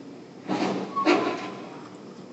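A person slurping a sip of coffee from a mug: a noisy pull starts about half a second in, and a second, louder pull follows about a second in.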